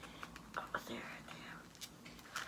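Soft clicks and rustling of a rhinestone sandal's strap being pushed and pulled through its buckle by hand, with faint whispered muttering.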